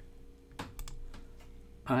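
A few quick computer mouse clicks about half a second in, choosing an item from a right-click menu, over a low steady hum.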